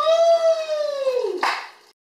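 A single long, high-pitched vocal call that rises slightly and then falls away, followed near the end by a short burst of noise.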